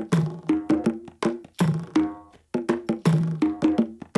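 Recorded hand-percussion loop of African, Middle Eastern and Indian drums and percussion played like a drum kit: a swung groove of sharp, wood-block-like clicks and tuned drum strikes that ring briefly at a low pitch, several hits a second.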